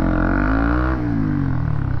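Honda CB150R's single-cylinder engine revving up and then easing off, its pitch rising to about a second in and falling again.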